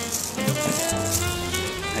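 Rattling and rustling of a sleeve and wrist jewellery being handled, with music playing in the background.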